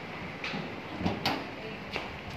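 A few short knocks and clatters of hands and the camera handling a cargo three-wheeler's cab, over a steady background hum.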